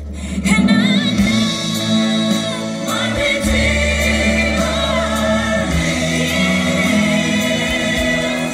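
Gospel worship song: several voices singing together over held low bass notes, growing louder about half a second in.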